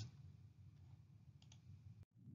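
Near silence: faint room tone, with two small quick clicks close together about one and a half seconds in.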